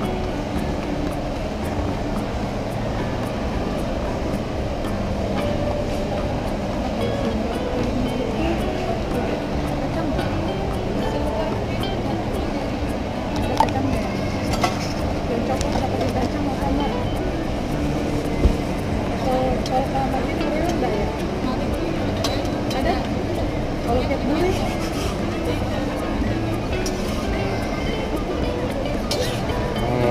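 Busy shop background: music playing, with people talking in the background. A few short sharp clinks come through about 14 and 18 seconds in.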